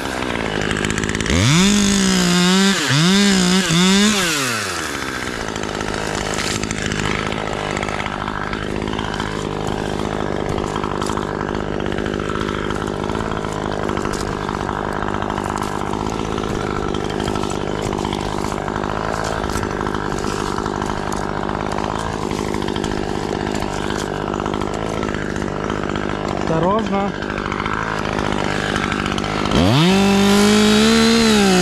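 Husqvarna T540XP Mark III two-stroke top-handle chainsaw, blipped up and down three times about two seconds in, then idling steadily for most of the time, and revved back up to full throttle right at the end.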